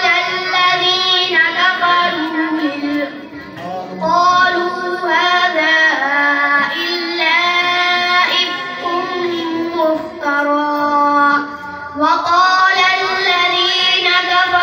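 A young boy reciting the Quran in a melodic, drawn-out tajweed style into a microphone. He holds long pitched phrases, with a short breath pause a few seconds in and another near the end.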